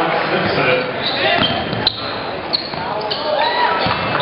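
Basketball game sounds on a hardwood gym court: a ball bouncing and sneakers squeaking, with a sharp knock about two seconds in. Many voices chatter steadily from the crowd in the hall.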